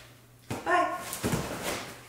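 A short, high-pitched yelping call about half a second in, followed by a second, softer call.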